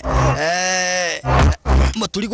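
Men grunting with strain in an arm-wrestling contest: one long, held strained grunt, then two short grunts near the end.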